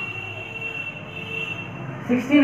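A steady high-pitched whine holding one pitch for about two seconds, then stopping, over faint room noise.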